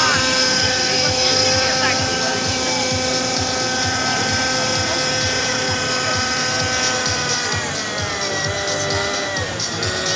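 Radio-controlled model helicopter's motor and rotor running with a steady whine, dropping in pitch about three-quarters of the way through and settling at a lower note.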